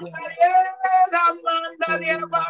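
A woman singing into a microphone: drawn-out, wordless worship notes that glide in pitch.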